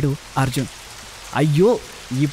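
Speech only: a Telugu narrator speaks three short phrases with brief pauses between them, over a steady background hiss.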